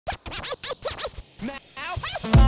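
DJ turntable scratching in an intro jingle: a quick run of back-and-forth pitch sweeps through the first second, then a few slower rising sweeps near the end.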